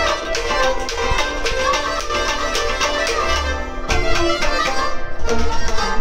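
Kashmiri folk music: a string instrument plays a melody over a steady hand-percussion beat, about four strokes a second.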